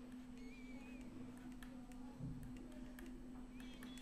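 Faint room tone with a steady low hum and a few light ticks and scratches, the stylus writing on a graphics tablet.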